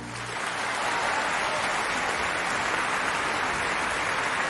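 Large concert audience applauding steadily, just as the orchestra's final low note dies away.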